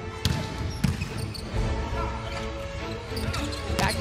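A volleyball being struck hard by hand: a few sharp slaps, the loudest about a second in and another near the end, over background music and arena noise.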